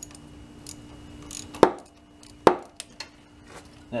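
A 10 mm wrench clinking against the distributor clamp of an air-cooled VW 1500 engine as the clamp is loosened: two sharp metallic clicks a little under a second apart, with a few lighter ticks after.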